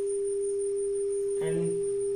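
Steady 400 Hz sine tone from a smartphone function generator, played through a multimedia speaker, holding one unchanging pitch.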